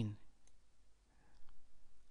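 Faint computer mouse click.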